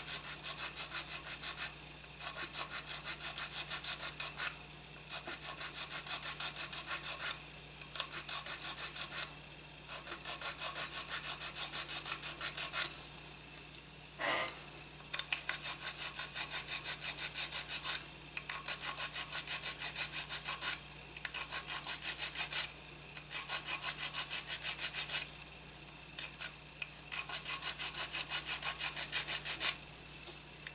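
A thin sanding stick rubbed back and forth over the glued seam of a plastic model kit, sanding it smooth. It comes in bursts of quick strokes, about five a second, with short pauses between them. There is a single tap about halfway through.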